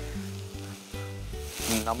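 Chopped onions and fenugreek leaves sizzling as they are sautéed in a pot on a gas flame, with background music playing underneath.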